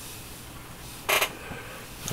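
A brief handling sound from the Nikon D90 camera body held in the hands, about a second in, over quiet room tone.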